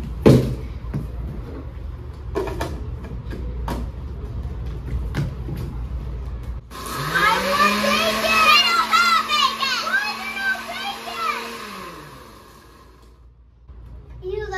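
Electric countertop blender switched on about halfway through: its motor spins up to a steady whine, runs for about five seconds, then winds down and stops, with children's high voices squealing over it. Before it start there are a few sharp knocks, the loudest at the very start.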